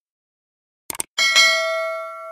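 Subscribe-button sound effects. A quick double mouse click comes about a second in. A bright notification-bell ding follows at once and rings on as it fades.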